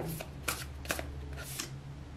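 A deck of tarot cards being shuffled in the hands: a string of short, soft card-on-card clicks, several a second.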